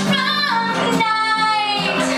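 A woman singing a song to acoustic guitar accompaniment, holding one long note through most of the second half.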